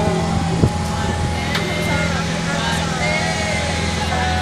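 An outrigger boat's engine running with a steady low drone, under the background chatter of passengers' voices.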